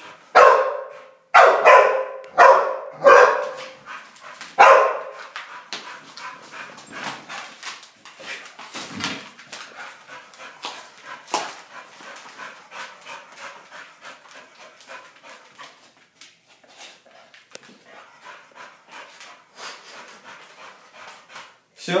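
American Staffordshire terrier barking loudly, about six barks in the first five seconds, then a long quieter stretch of small clicks and knocks.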